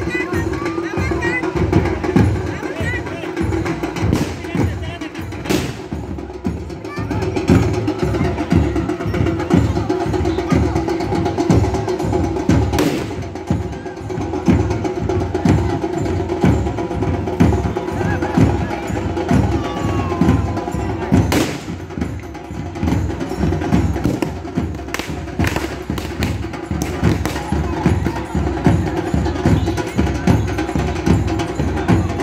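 Dhol drums beaten in a fast, even, continuous rhythm, with a few sharp louder cracks among the strokes and crowd voices under it.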